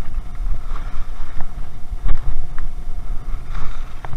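Wind rumbling on a chest-mounted action camera's microphone during a downhill ski run, over the hiss of skis sliding on snow. One sharp knock about two seconds in.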